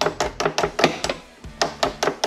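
An 8mm wrench working the side-post terminal bolt of a car battery: a quick run of sharp metal clicks, a short pause about a second in, then two more clicks near the end.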